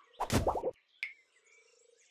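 Cartoon sound effect: a short croaking sound lasting about half a second, then a single click, then near quiet with a faint steady hum.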